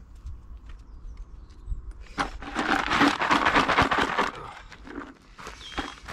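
Screws, nails and scrap metal being pulled off a magnet and dropped into a plastic bucket: a dense rattle of small metal clicks that starts about two seconds in and lasts about two seconds, with a few more clicks near the end.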